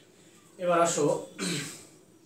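A man clearing his throat: a loud voiced rasp a little over half a second in, followed by a second, shorter one that drops in pitch.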